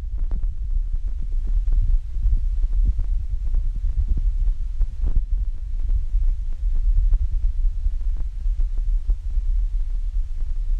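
Wind buffeting the microphone: a loud, continuous low rumble with many small, irregular thumps.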